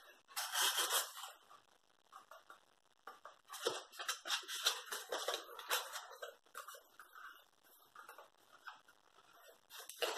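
Cardstock being folded and handled, faint rustling and scraping of card and paper, in a burst about half a second in and again from about three to six seconds in.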